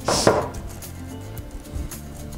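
A brief rustle with a click about a quarter-second in, then faint handling noise, from hands working the cold-protection cloth wrapped round a potted rose.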